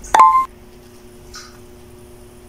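A short electronic beep sound effect: one bright tone lasting about a third of a second, just after the start, over a faint steady low hum.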